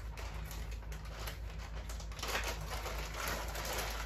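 A plastic shipping bag crinkling and rustling as it is opened and a swimsuit is pulled out of it, busiest in the second half.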